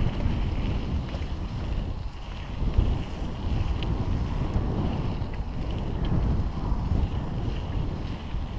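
Wind buffeting the microphone of a bike-mounted camera as a bicycle rolls along a gravel dirt track, with the low rumble of the tyres on the loose surface.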